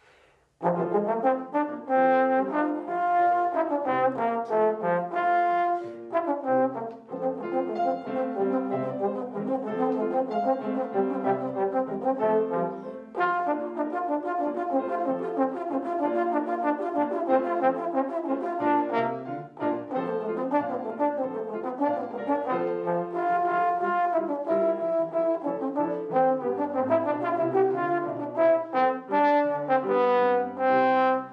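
Trombone playing a melody with grand piano accompaniment, both coming in together about half a second in and playing on continuously.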